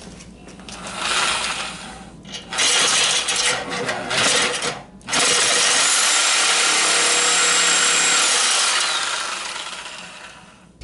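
Reciprocating saw cutting through a bent car bumper beam. It runs in shorter spells at first, then steadily for about four seconds before winding down near the end.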